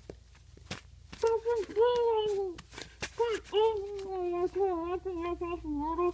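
A child's high voice making long wordless sounds with a rising and falling pitch, starting about a second in, after a few soft handling clicks.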